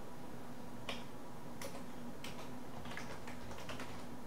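Typing on a computer keyboard: scattered key clicks, sparse at first and a quicker run near the end, over a steady low hum.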